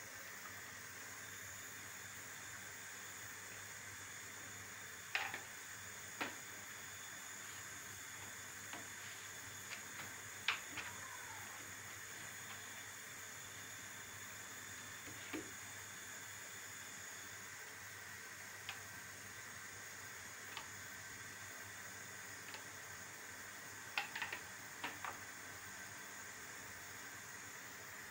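Faint steady hiss with a scattering of soft taps and crinkles from yufka pastry sheets being folded by hand on a wooden board; the sharpest click comes about ten seconds in, and a short cluster of taps comes near the end.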